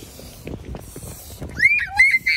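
Faint outdoor noise with a few soft knocks, then, about a second and a half in, a young child's short high-pitched shriek.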